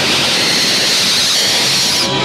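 A loud, steady hiss of noise from the film soundtrack, like rushing air, that starts and cuts off abruptly.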